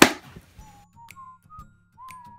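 A loud sharp clack right at the start as a small object is handled or dropped, then a light whistled melody in the background music with scattered small clicks of cosmetics and containers being moved in a plastic drawer.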